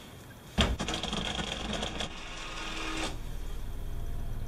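A rotary-dial wall telephone: a knock as the handset comes off the hook, then the dial turned and running back with rapid clicking, twice, stopping about three seconds in.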